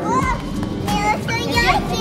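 A young child's high-pitched voice, giving several short excited cries that rise and fall sharply in pitch.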